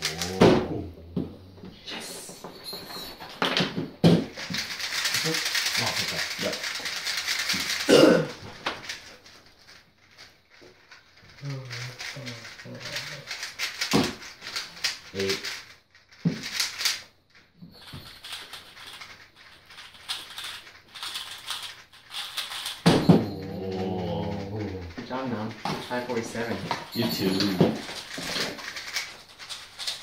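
Speedcubes being turned fast in a timed speedsolve: a dense plastic clacking rattle for about four seconds that ends in a sharp slap on the Speed Stacks timer pads. Scattered clicks of cubes and hands on the table, and voices later on.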